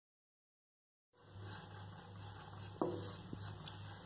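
Complete silence for about the first second, then a faint steady hum with two light taps of a wooden spatula against a pan while dry moong dal filling is stirred.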